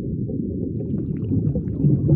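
Low, steady underwater-style rumble of a logo-animation sound effect, with faint bubbling ticks coming in about halfway through.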